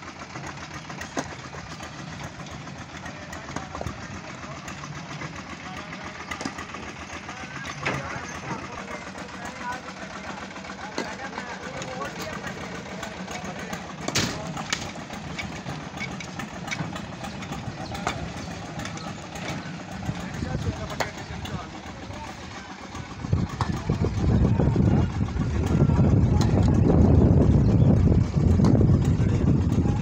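A concrete mixer's engine runs steadily, with scattered knocks and clatter from the work. About 23 seconds in, a much louder low rumble takes over.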